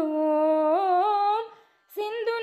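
A singer humming one long held note, unaccompanied. The pitch steps up twice partway through, then the voice fades out shortly before the end.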